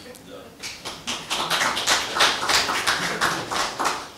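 Audience applauding: a dense patter of many hands clapping that starts about half a second in and tails off near the end.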